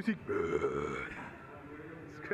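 A man's voice making a rough, drawn-out noise for about a second, following on from laughter, then fading.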